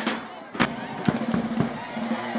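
Sharp drum beats, about five in two seconds and unevenly spaced, over music with voices in the background.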